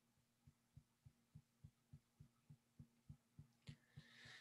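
Fingertips tapping steadily on the upper chest, an EFT tapping point, making soft low thumps about three to four a second. A faint in-breath comes near the end.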